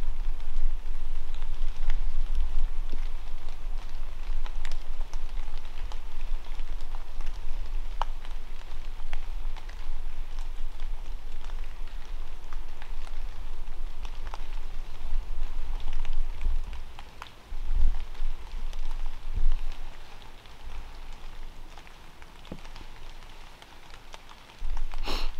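Water drops falling on dry leaf litter, light rain or fog drip from the trees: many small scattered ticks over a steady hiss. A low rumble runs underneath and eases off over the last few seconds.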